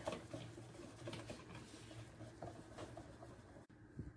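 Wire whisk stirring thick chocolate cake batter in a bowl: faint, irregular scraping and light clicks against the bowl.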